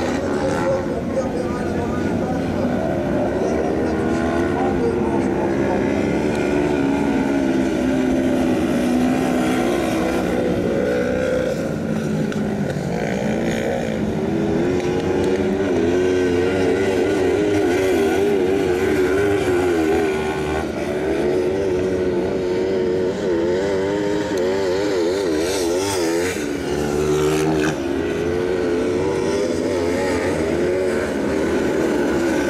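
Kart cross buggies' 500 cc motorcycle engines revving up and down as they race round a dirt track, several engines overlapping, their pitch rising and falling with each throttle change.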